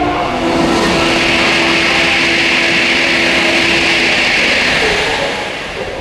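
A saxophone ensemble holds its final note under a loud, broad rushing noise that swells over about four seconds and then fades near the end.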